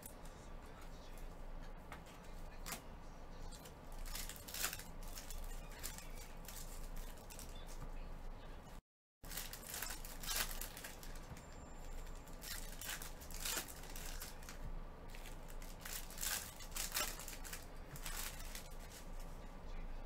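Shiny foil wrappers of Panini Select trading-card packs crinkling and tearing as they are opened by gloved hands, in short irregular crackles. The audio cuts out completely for a moment about nine seconds in.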